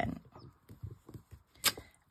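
Clear acrylic stamp block being pressed and rocked on cardstock on a craft mat, with faint rubbing and small knocks, then one sharp click near the end as the block comes off the card.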